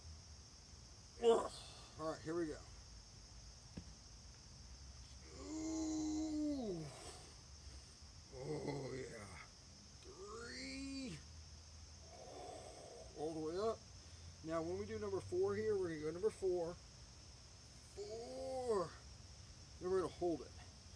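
A man grunting and groaning with effort as he pushes through a set of ring dips: about eight separate strained vocal sounds, some short, some drawn out with a falling or wavering pitch.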